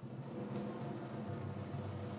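A drum roll: a steady, low rumble of rapid drum strokes, building suspense ahead of an announcement. It swells slightly in the first half second, then holds even.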